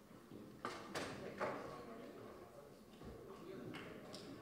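Quiet hall with a faint voice and a few sharp knocks close together about a second in.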